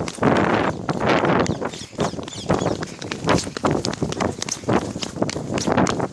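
A person running: heavy breathing in repeated gasps, about once or twice a second, with footfalls in between.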